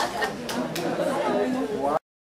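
Chatter of several people talking at once in a large hall, with a few sharp knocks or clicks among the voices.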